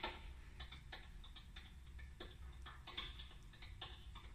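Tap shoes striking a stage floor in a quick, uneven run of sharp taps from two dancers, faint and thin as heard through a television's speaker.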